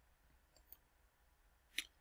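Near silence: room tone, broken by a faint tick about a third of the way in and one sharp computer mouse click near the end as the presentation slide advances.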